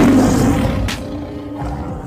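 Action-film soundtrack music with a roar-like sound effect laid over it and a sharp hit just before a second in. The sound dies away toward the end.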